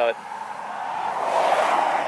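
A car passing on the road, its tyre noise growing louder toward the end.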